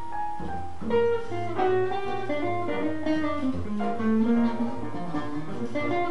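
Live jazz trio playing: electric or acoustic guitar, piano and plucked upright double bass together, with the bass holding low notes under the guitar and piano lines.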